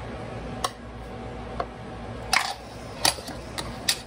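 A scattering of light clicks and clinks of a metal spoon and ceramic bowl being handled and set down on a glass stovetop, more of them in the second half.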